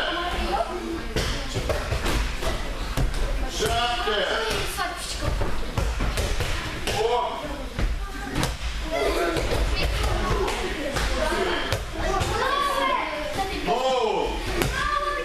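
Judo throws and falls: bodies thudding onto tatami mats several times, among voices of people talking in a large hall.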